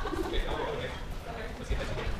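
Indistinct voices of people talking in the background, with a brief high-pitched vocal sound about half a second in.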